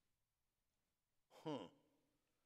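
Near silence, then about a second and a half in a man's short musing "hmm, huh" vocalization, falling in pitch.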